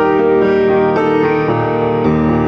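Grand piano playing a flowing passage of sustained chords and melody, with new notes struck about every half second.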